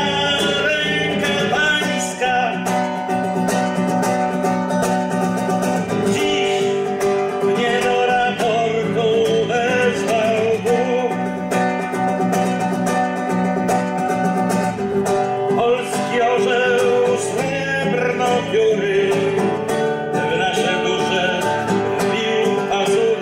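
A man singing while strumming chords on a nylon-string classical guitar.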